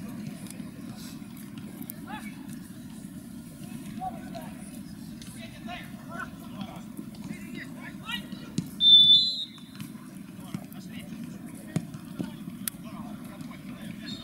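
Outdoor small-sided football game: scattered players' shouts and ball kicks over a steady low rumble. A short, sharp referee's whistle blast about nine seconds in is the loudest sound.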